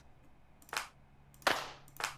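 Two electronic clap samples auditioned one after the other: short sharp hits about three-quarters of a second apart, the second louder with a longer fading tail.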